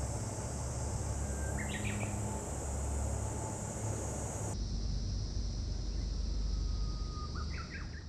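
Field ambience: wind rumbling on the microphone under a steady high insect drone, with a short bird call twice, about two seconds in and again near the end.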